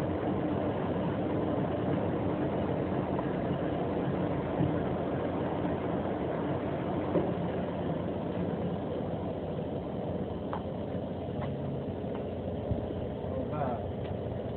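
Axelson Model 25 engine lathe running, a steady mechanical drone of its motor and drive, with a few faint clicks.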